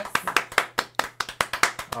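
A few people clapping by hand: a quick, irregular run of claps that tails off near the end.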